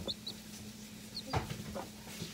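Ducklings and young chicks in a brooder peeping, a few short high cheeps scattered through, with a soft knock a little over a second in.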